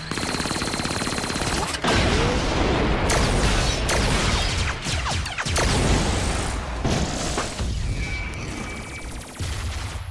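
Cartoon sci-fi sound effects of an alien warship's energy cannons firing a rapid, continuous barrage, with explosions.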